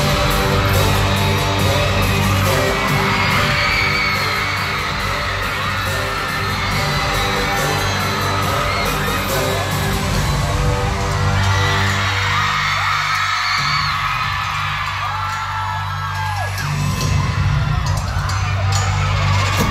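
Loud intro music through an arena sound system, built on a steady deep bass drone, with a large crowd screaming and cheering over it.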